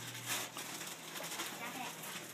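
Wrapping paper on a large gift box rustling and crinkling as it is pulled at by hand, loudest in a short burst about a third of a second in.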